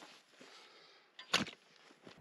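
Clamshell post hole digger jabbed into dry soil: one sharp strike about a second and a half in, with little else between the strikes.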